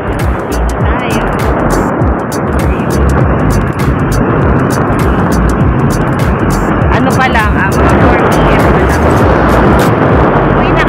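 Wind rushing and buffeting over a phone microphone on a moving motorcycle, mixed with engine and road noise. Music plays underneath.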